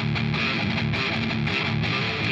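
Explorer-style electric guitar playing a fast-picked riff that sits in the low register.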